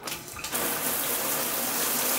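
Handheld showerhead spraying water: a steady hiss of spray that comes up to full strength about half a second in.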